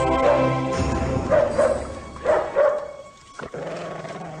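Dramatic film score with a dog barking in short bursts over it; the music and barking drop away sharply about three seconds in.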